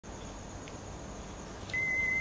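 Faint room hiss with a thin high whine, then a steady high-pitched electronic beep starts near the end and holds on.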